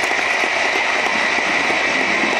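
Audience applauding, a dense steady clatter of many hands.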